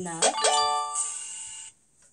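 A bright chime from a children's Bible story app, several notes sounding together, starting about half a second in and ringing for about a second before cutting off suddenly. It sounds as the quiz answer 'No' is given and the question closes, the app's signal for a correct answer.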